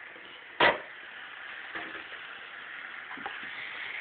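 A single sharp knock about half a second in, then a steady hiss with a couple of faint small clicks.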